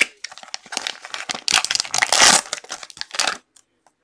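Plastic wrapping crinkling and rustling as graded trading-card slabs are unwrapped by hand. It is loudest around the middle and dies away shortly before the end.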